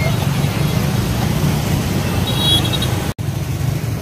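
Dense motorbike and scooter traffic: a steady low rumble of many small engines passing close by, with a short high beep about two and a half seconds in. The sound breaks off for an instant just after three seconds.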